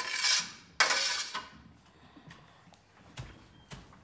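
Two short scraping, rustling strokes about a second apart as a hand tool drags steamed spent sage out of a stainless-steel distillation tank, then a few faint clicks.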